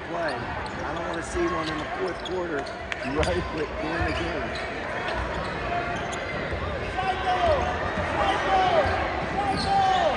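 A basketball dribbled on a hardwood court in a large arena, mixed with the talk of spectators in the stands.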